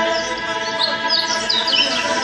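Live ensemble music: a violin playing quick, high sliding notes over sustained lower notes.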